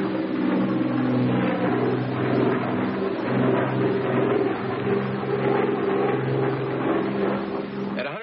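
Twin radial piston engines of a Douglas A-26 Invader running at takeoff power in a steady drone as the bomber climbs out, heard on an old film soundtrack with the high end cut off.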